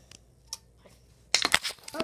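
A few faint clicks, then a quick run of louder clicks and knocks about one and a half seconds in.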